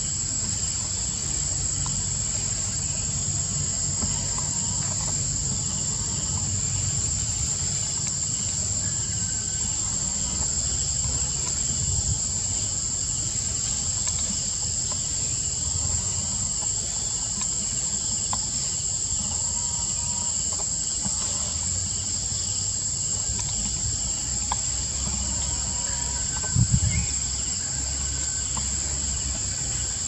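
Steady, high-pitched drone of forest insects, with a low rumble beneath it. A short low thump about three seconds before the end is the loudest sound.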